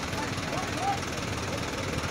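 Diesel engine of a truck-mounted crane running steadily while it lifts a stranded dump truck, with people talking faintly in the background.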